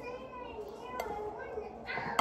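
A young child's high-pitched wordless vocalising, with one light clink of a serving utensil against a glass bowl about a second in.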